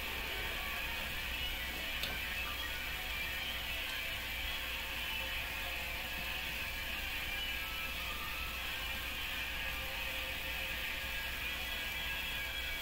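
Steady whir of a ceiling fan in a quiet room, with one faint click about two seconds in.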